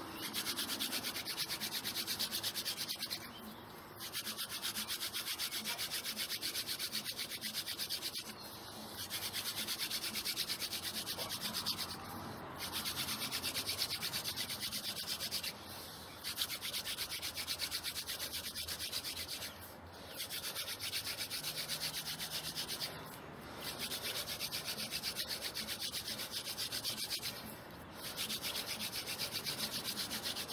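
Wooden hand-drill spindle twirled between the palms, grinding into a wooden fireboard with a steady, fast scratchy rubbing. It breaks off briefly about every four seconds as the hands move back up the spindle, then resumes. The pressure wears the wood into hot dust on the way to a coal.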